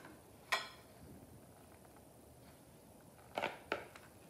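Mostly quiet room tone, with a single sharp click about half a second in and a few light knocks near the end: a metal spoon striking a clear plastic container as crumbled tofu stuffing is mixed.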